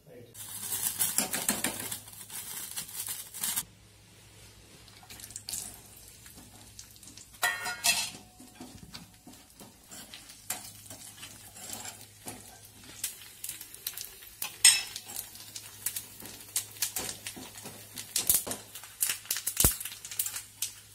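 Dry coconut pieces frying in ghee in a small iron pan: a loud sizzle for the first few seconds, then a metal spoon clinking and scraping against the pan as the pieces are stirred until golden.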